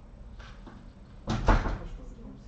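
A sudden knock or thump about a second and a half in: two hits close together, the second louder.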